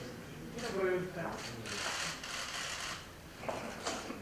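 Indistinct voices in the room, a brief spoken sound about a second in, followed by scratchy rustling noises and two sharp clicks near the end.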